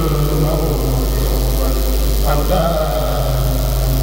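A kourel of Mouride men chanting a khassida in unison through a PA, holding long sustained notes, with a voice sliding up into a new phrase a little past two seconds in. A steady low hum runs underneath.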